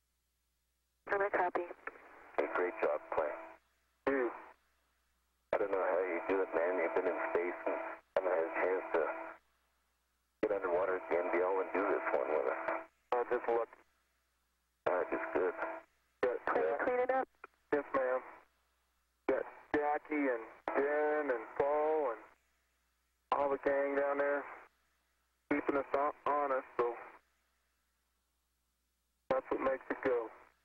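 Radio voice chatter from the spacewalk: a string of short spoken transmissions, thin and narrow like a radio loop, each cut off sharply with dead silence between them. The exchanges are spacewalk crew and ground talking the connector work through.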